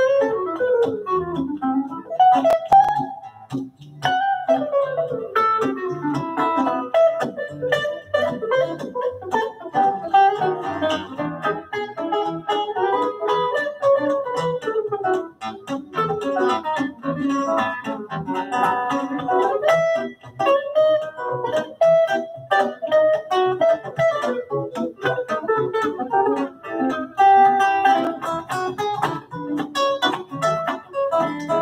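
Guitar duet: an archtop electric jazz guitar and an acoustic flattop guitar playing together, with picked melody lines over chords.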